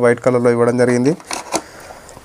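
A man talking for about the first second, then two light clicks as a white phone charger adapter is pressed into its moulded tray in the box.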